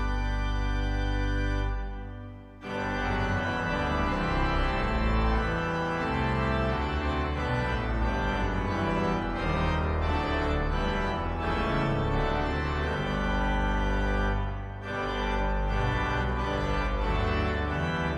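Two-manual electronic organ playing a hymn with sustained chords over a pedal bass. There is a short break between phrases about two seconds in and another near fifteen seconds.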